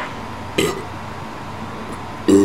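A man's single short burp about half a second in, after chugging a can of beer.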